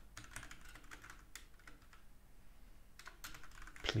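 Typing on a computer keyboard: a run of light key clicks, a pause of about a second and a half, then another run of keystrokes near the end.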